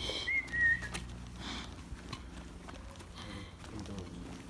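A person whistles briefly for a dog: a short high whistle in two quick notes in the first second, then only faint outdoor background.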